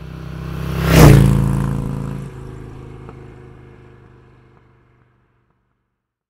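A vehicle engine's low drone swelling into a loud whoosh about a second in, then fading away to silence.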